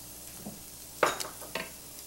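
A wooden spoon stirring a sauce of shallots and butter in a stainless steel saucepan, with a faint sizzle from the pan; a sharper scrape or knock of the spoon comes about a second in, followed by a few lighter taps.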